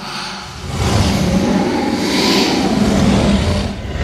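Hardstyle track in a breakdown: the kick drum has dropped out and a swelling noise sweep rises over a low rumbling bass. It eases off briefly just before the end.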